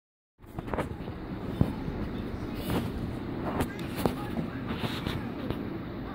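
Television sound of a cartoon trailer picked up through a phone's microphone in the room, starting half a second in, with a string of sharp clicks and knocks through it.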